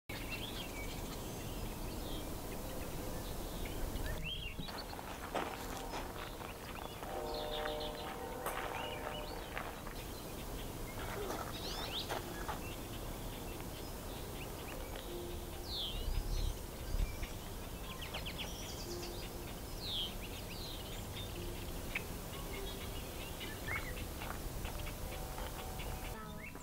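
Outdoor woodland ambience: small birds chirping and calling at scattered intervals over a steady background hiss.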